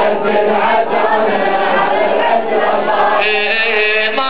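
Crowd of male mourners chanting a Shia latmiya refrain in unison. A single leading voice stands out clearly near the end.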